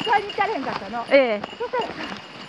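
A person talking, the voice rising and falling in short phrases, quieter near the end.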